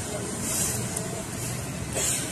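Steady noise of heavy rain, with cars driving on a water-covered road and a brief brighter hiss about half a second in.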